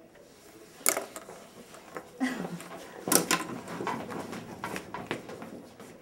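Scattered light knocks, clicks and rustles of classroom desks, chairs and papers being handled, with the sharpest knocks about a second in and around three seconds in.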